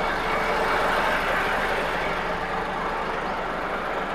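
UD Quon heavy truck's diesel engine idling steadily.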